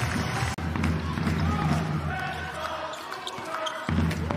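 A handball bouncing on an indoor court, with short knocks and players' calls over the hum of a sports hall. The sound changes abruptly about half a second in and again near the end.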